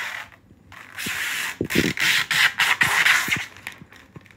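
Clear protective plastic film being peeled off a PC case's glass side panel: a crackling, tearing hiss that breaks off briefly just after the start, then runs again for about two and a half seconds.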